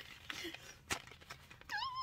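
Cardboard crochet-hook boxes handled in the hands, with light taps and a sharp click about a second in. Near the end comes a short, high, wavering whine, rising at first and then wobbling.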